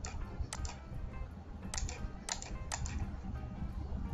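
About five sharp, separate clicks from a computer mouse and keyboard being used, spaced irregularly, over a low steady hum.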